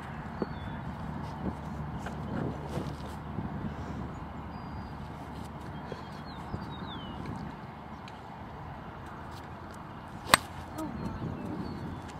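A single sharp crack of a golf club striking a ball off a driving-range mat about ten seconds in, over steady outdoor background noise.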